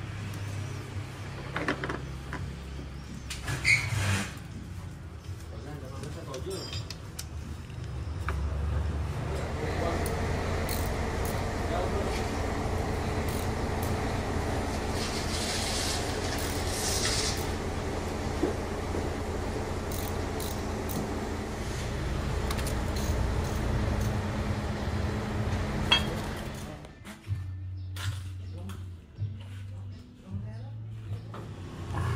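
Metal hand tools clicking and knocking on the parts of an engine's cylinder head and camshafts, over a steady background hum.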